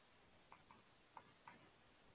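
Near silence broken by four faint, short ticks, a stylus tapping and stroking on a pen tablet during handwriting.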